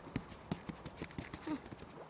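Quick, light footsteps on hard ground, about five or six uneven steps a second, faint, with a brief small vocal sound about one and a half seconds in.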